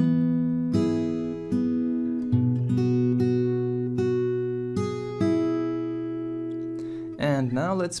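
Acoustic guitar with a capo played fingerstyle: a slow phrase of single plucked notes over a bass note, about ten notes in the first five seconds, then left to ring and fade.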